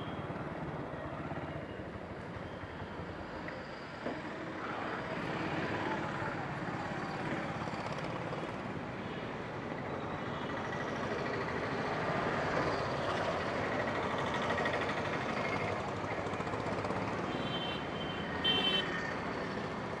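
Street traffic and urban bustle, a steady noisy hum of vehicles and people, with two short high-pitched beeps near the end.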